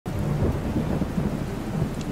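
Steady rain with a continuous low rumble of thunder.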